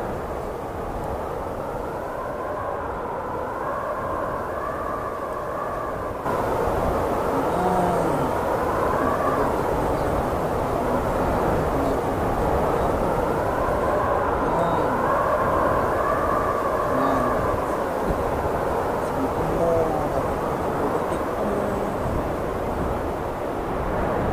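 Steady road and wind noise of a car driving through a snowstorm, heard from inside the cabin: low tyre rumble under a wind howl that rises and falls. It gets louder about six seconds in.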